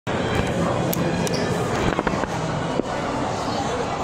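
Indistinct background voices and general hubbub, with a few sharp clicks.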